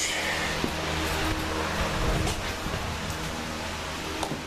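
A steady low hum with hiss from a running machine such as a fan, with a couple of faint knocks.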